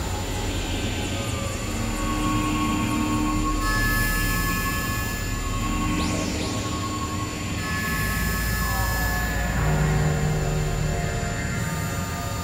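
Experimental synthesizer drone music from a Novation Supernova II and Korg microKORG XL: layered sustained tones over a low drone, changing in blocks every few seconds. A sweeping pitch glide comes about halfway through, and a falling glide follows a few seconds later.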